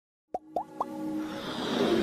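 Animated logo intro sound effects: three quick plops, each a short upward-gliding pop about a quarter second apart, starting about a third of a second in, followed by a riser that swells steadily louder.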